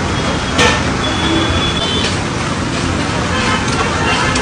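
Busy street-food stall din: a steady noisy background with voices, a sharp click about half a second in, and a short high steady tone lasting about a second.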